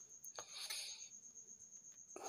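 An insect trilling steadily in one high, pulsing tone. About half a second in there is a click, then a brief hiss.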